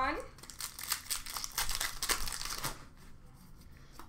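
Crinkling and rustling of a foil trading-card pack and cards being handled for about two and a half seconds, then fainter handling.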